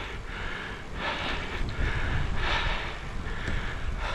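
A cyclist's heavy breathing while riding, about four breaths a second or so apart, over a steady low rumble of wind on the microphone and tyres on the road.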